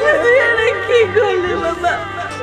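Female voices wailing and sobbing in grief, the pitch wavering up and down, over steady held background music.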